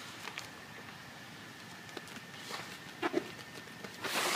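A few soft clicks and light handling noises from a large sheet of vinyl wrap film being held and moved, with a short louder sound about three seconds in, over quiet room tone.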